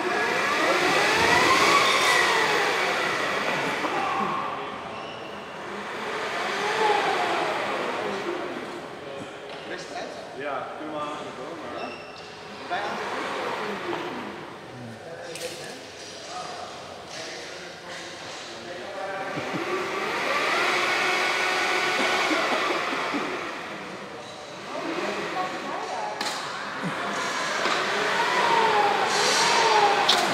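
Electric flying winch whining as it hauls a person in a stunt harness up and around on a wire, its pitch rising and then falling several times as the motor speeds up and slows down.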